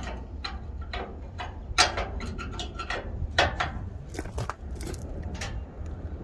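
A steel combination wrench clinking against the hex nut of a very tight DOC outlet temperature sensor on a truck's metal exhaust aftertreatment canister. It makes an irregular run of sharp metallic clicks and clacks as the wrench is fitted and worked.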